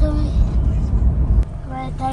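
Low rumble of a moving car heard from inside its cabin, engine and road noise, which drops suddenly about one and a half seconds in.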